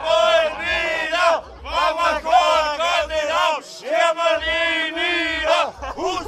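Masked Fetzen carnival figures calling out in high falsetto voices, the disguised voice they use to tease onlookers. The calls come in long strings with brief breaks, at times overlapping.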